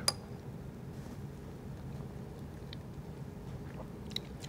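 Quiet room tone with a faint steady hum and a couple of faint light ticks a little before the three-second mark.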